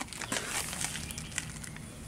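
Handling noise: light rustling with scattered small clicks.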